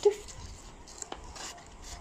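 Faint rubbing and light taps of fingers handling a cardboard and paper pop-up book page, with a sharper click about a second in.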